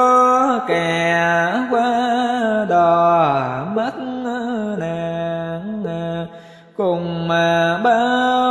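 A voice chanting a Buddhist mantra melodically, holding long notes that slide slowly up and down in pitch, with a short break for breath about six and a half seconds in.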